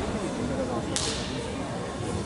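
A single sharp slap about a second in, over a steady murmur of voices.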